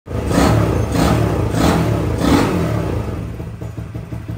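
Small four-stroke single-cylinder Honda motorcycle engine, a CD50 fitted with a Honda Alpha engine, running while the throttle is blipped over and over, about every two-thirds of a second, the revs easing off toward the end.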